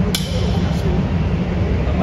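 A sword blade strikes a suit of steel armour once, a sharp metallic clink with a short ring just after the start, over the low hum of a crowded hall and faint talk.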